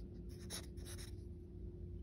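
Felt-tip marker writing on lined paper: a few faint, short strokes in the first half as the numeral 4 is drawn.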